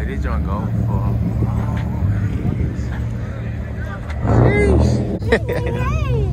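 Low, steady rumble of idling car engines, with people's voices talking around it; the voices get louder about four seconds in.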